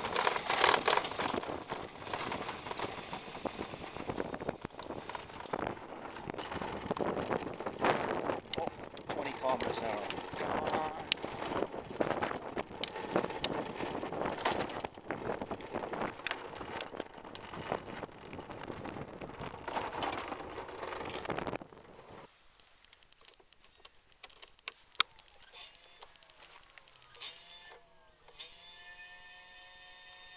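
Electric scooter ridden over rough asphalt: wind buffeting the microphone, tyre noise and the frame rattling with many sharp clicks. After about twenty seconds it goes much quieter, and near the end the scooter's electric motor whines, rising then holding a steady tone as the wheel spins.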